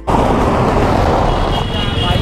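Loud, steady outdoor rush of wind on the microphone mixed with a car's engine running close by. The rush starts abruptly as the music cuts off.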